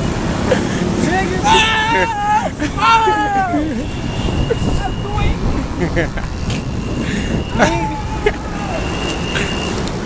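Steady road traffic noise from a busy highway below, with voices calling out in rising and falling pitch about a second and a half in and again near eight seconds, and a thin high tone that comes and goes in the second half.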